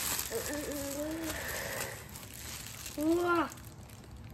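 Packaging rustling and crinkling as a book is pulled out of its wrapping, with a child's drawn-out hum about half a second in and a short exclamation with a rising-falling pitch near the end.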